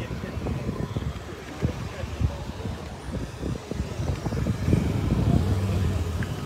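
Car-show parking-lot ambience: distant voices and a car engine running, with wind rumbling on the phone's microphone. A steady low engine hum comes up about three-quarters of the way in.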